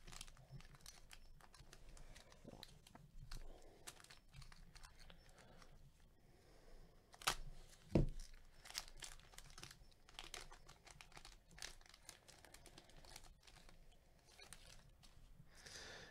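Faint crinkling and tearing of a Topps Tribute trading-card pack's plastic wrapper as gloved hands open it, with two louder sharp snaps about halfway through.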